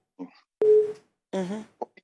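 A caller's voice over a telephone line, broken into short fragments. About half a second in comes a short, steady single-pitch tone lasting under half a second.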